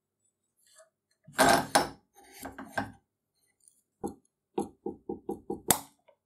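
Short metal knocks in a quickening series, a punch tapped to drive the pin out of the rusted bolt of an antique watchmaker vise held in a bench vise, after a louder clatter of metal handling about a second and a half in; a sharp click near the end.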